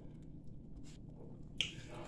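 Quiet eating sounds: faint short clicks of a metal spoon and mouth, with one sharper click about a second and a half in.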